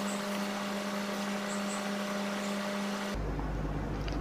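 A steady low hum over an even hiss, stopping abruptly about three seconds in. No separate stirring or dripping sounds stand out.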